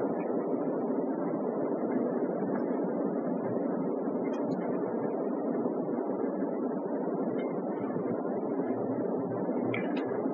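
Steady background rush of noise with no distinct events, a constant room and microphone noise floor with only a couple of faint ticks.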